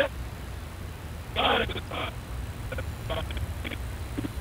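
Faint, thin-sounding voices from the crew's capsule audio feed, heard in short snatches over a low steady hum.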